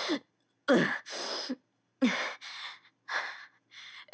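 A person's voice letting out a pained, falling 'ah', then a breathy sigh.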